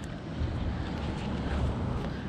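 Steady low outdoor rumble with no distinct events, swelling slightly in the middle.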